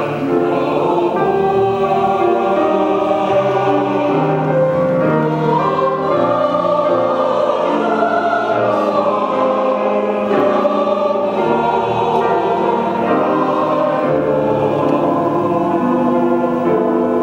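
Church choir singing an anthem in sustained, overlapping notes, accompanied by a grand piano.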